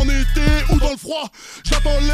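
Hardcore hip hop beat with a deep, steady bass and a male rap vocal over it. About a second in, the beat cuts out for most of a second, then drops back in.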